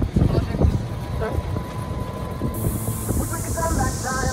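Talking voices over a busy, knocking background, with a hiss that swells and deepens from about halfway through.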